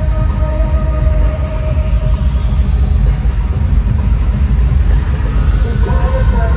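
Loud live pop concert music played over an arena sound system, heavy in the bass, with a high held tone fading out in the first second.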